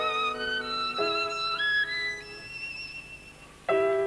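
Solo violin playing a slow melody of held notes with vibrato, climbing into high notes over sustained lower accompaniment. The melody fades near the end, and a louder chord enters just before it ends.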